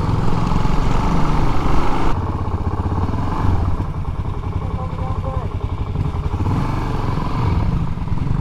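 Suzuki DRZ400SM's single-cylinder engine running under way, with wind noise on the microphone; the sound drops about two seconds in as the bike slows for a turn.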